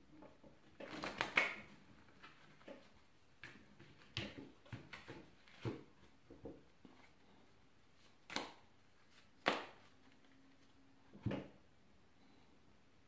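A deck of tarot cards being handled and shuffled on a cloth-covered table: soft rustles and light taps of the cards, a short flurry about a second in, and three sharper brief card strokes in the second half.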